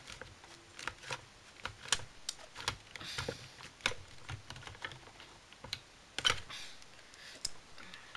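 Light, irregular clicking and clattering of screwdriver bits being handled and pulled out of a plastic bit case, with a sharper click about six seconds in.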